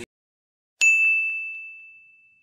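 After a brief silence, a single bell-like ding sound effect strikes once, ringing as one clear high tone that slowly fades away.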